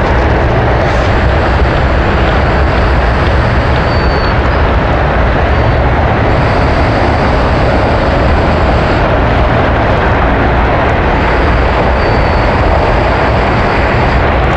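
Strong wind buffeting the microphone: a loud, steady rumble and hiss.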